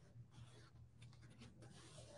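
Near silence with a few faint, soft rubbing brushes: hands pressing down and smoothing a folded, hot-glued fabric pot holder on a paper-covered table, over a low steady room hum.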